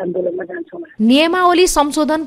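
Speech only. A voice sounds thin and telephone-like at first, and a louder, full-range voice takes over about a second in.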